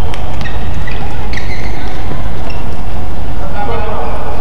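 Badminton doubles rally: sharp racket hits on the shuttlecock and short shoe squeaks on the court, mostly in the first second and a half, over a loud, steady crowd din. A voice calls out near the end as the point is lost and won.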